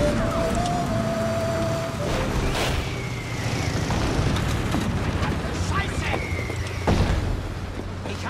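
War-film battle sound: a motorcycle with sidecar running under shellfire, with a blast about two and a half seconds in and a sharper one just before seven seconds, over a steady low rumble. A held high tone stops about two seconds in.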